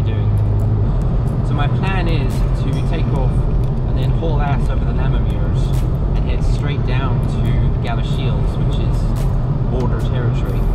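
A man talking inside a car cabin over the car's steady low rumble.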